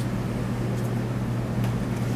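Room tone in a pause between speech: a steady low hum with a faint even hiss.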